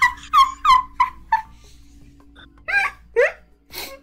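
A person laughing in short, high-pitched bursts: a quick run of four or five giggles in the first second and a half, then a few more near the end.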